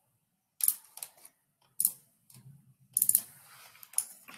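A few sharp clicks about a second apart, the last a quick cluster of several, with a faint low hum between them.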